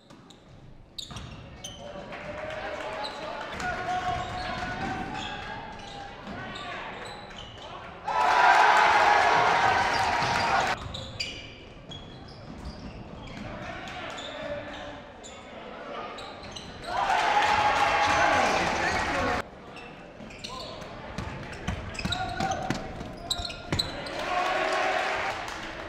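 Basketball game in a gym: a ball dribbling on a hardwood floor, with players' and spectators' voices throughout. Two louder stretches of voices come about a third and two thirds of the way through.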